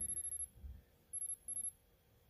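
A thin, very high-pitched electronic tone that sounds in a few short pulses with gaps between.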